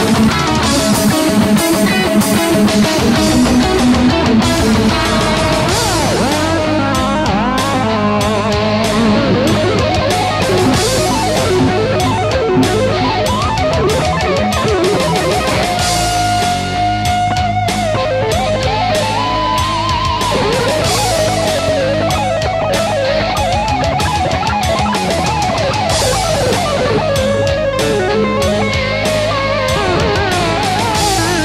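Distorted electric guitar played through a BOSS ME-70 multi-effects unit: fast lead lines with a long held note about halfway through and bent, vibrato-laden notes later, over a steady beat with drums.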